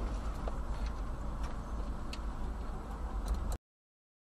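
Low, steady rumble inside a stationary car's cabin, with a few faint, irregular clicks. It cuts off abruptly about three and a half seconds in.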